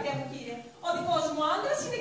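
Only speech: a woman speaking lines of stage dialogue.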